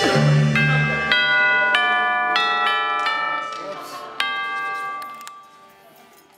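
Tubular bells (orchestral chimes) struck one note at a time in a slow run of about eight strikes, each note ringing on. A louder strike comes about four seconds in, then the ringing fades away.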